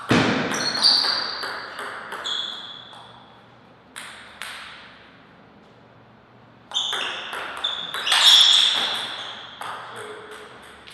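Table tennis ball clicking off the bats and the table in two quick rallies, one at the start and another about seven seconds in, with a couple of lone bounces between them. Each hit has a short, high ringing ping.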